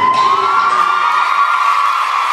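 A group of young voices cheering, with long high-pitched whoops that rise and then hold steady.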